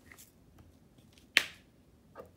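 A single sharp click about one and a half seconds in, after a few faint ticks.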